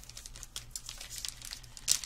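Clear plastic packaging crinkling as hands handle and pull at it, a run of small crackles with a louder crackle near the end.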